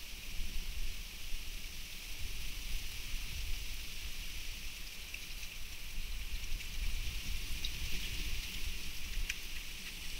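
Steady outdoor ambience picked up by a trail camera's microphone: an even high-pitched hiss over a low, uneven rumble, with a few faint clicks near the end.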